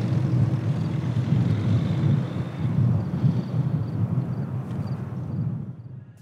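A car's engine running, a low steady rumble that fades out near the end.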